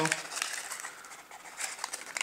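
Faint rustling of a small paper baking-powder sachet being handled and opened, with a few soft clicks in the second half.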